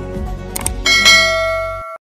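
Subscribe-button sound effects over background music: two quick mouse clicks just past half a second, then a bright notification-bell ding that rings out and cuts off suddenly near the end.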